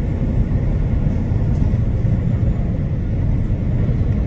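Steady low rumble of engine and road noise inside a truck cab cruising at highway speed.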